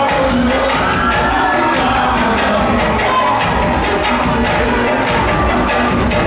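Live band music played loud through a hall's PA, with a steady drum and hand-percussion beat under keyboard and bass, and a crowd cheering and singing along.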